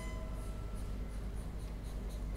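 Quiet, unpitched scratching strokes from bowed strings, about four or five a second and uneven, in an extended-technique passage of contemporary chamber music. A held high note fades out just at the start.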